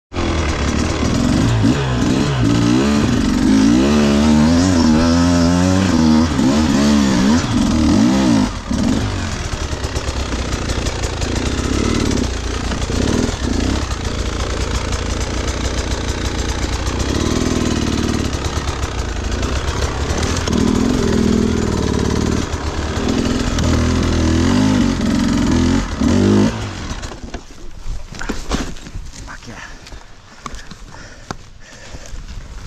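Enduro dirt bike engine being revved hard up a steep climb, its pitch rising and falling with the throttle. Near the end the engine sound cuts out and only scattered rustling and knocks remain, as the bike stalls and goes down on its side on the slope.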